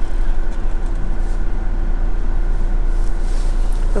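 Motorhome engine idling steadily, heard from inside the cab: a constant low rumble with a faint steady hum above it.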